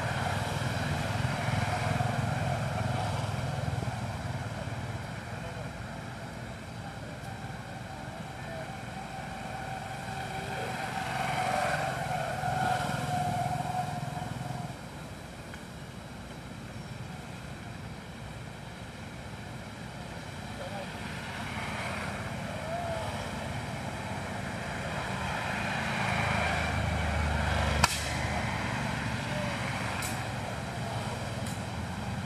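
Outdoor background of a low engine-like rumble that swells and fades, with faint voices. One sharp click near the end.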